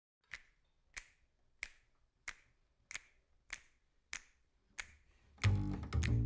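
Eight finger snaps keep an even beat, about one and a half a second. Near the end, music with a deep bass line comes in: the opening of an intro music track.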